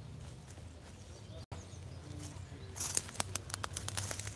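Footsteps on a forest floor of dry leaves and twigs, with a quick run of crackles near the end, over a steady low hum.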